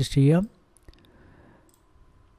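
A few faint computer mouse clicks, about half a second to a second in, after a man's voice breaks off.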